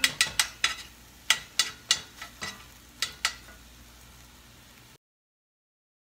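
A utensil clinking against a bowl as pancake batter is stirred: sharp, irregular clinks a few times a second, stopping about three seconds in. The sound cuts out abruptly about five seconds in.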